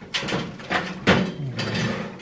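Byrna HD magazine being worked by hand: a series of plastic scrapes and clicks as the spring-loaded follower is pushed and slid, with the sharpest click about a second in.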